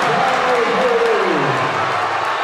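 Basketball gym crowd cheering and shouting in reaction to a blocked shot. One voice in it calls out, falling in pitch over about a second.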